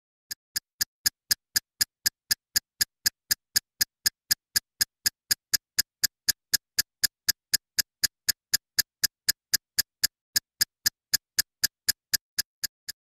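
Steady electronic ticking, about four clicks a second, evenly spaced.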